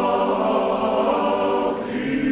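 A choir singing held, chant-like chords, moving to a new, lower chord near the end.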